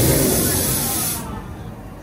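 Loud hissing spray of air from the pre-show's fart-gun effect, cutting off about a second in, with a voice under it at the start.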